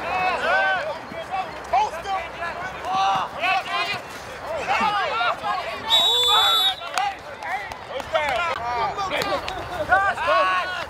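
Several men shouting and calling out on a football field. About six seconds in, a referee's whistle blows once, a single steady high note lasting just under a second, which ends the play.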